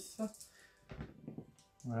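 A few dice rolled onto a wargaming terrain table, clicking briefly as they land, to roll saving throws.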